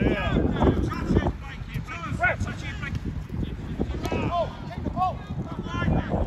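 Distant shouts from players and spectators across an outdoor football pitch, a few short calls over a steady low rumble of wind on the microphone.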